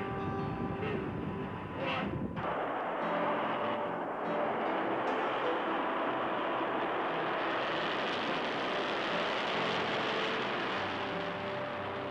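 Rocket engines of a missile lifting off, a dense steady rush of exhaust noise that comes in about two and a half seconds in and grows brighter toward the middle. Held music notes are heard before it starts and stay faintly beneath it.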